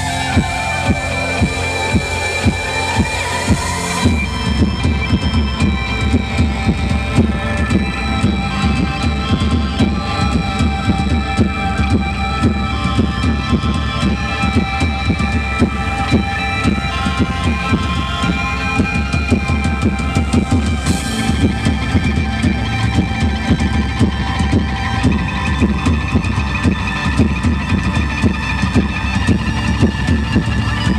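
Live band playing an instrumental passage with a steady beat and electric guitar. A falling sweep runs over the first few seconds, then the full band comes in about four seconds in.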